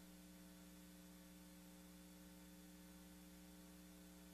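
Near silence with a faint, steady electrical hum of a few even tones: mains hum in the sound system.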